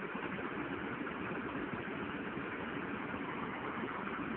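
Steady background noise: an even hiss and low hum with no distinct clicks or other events.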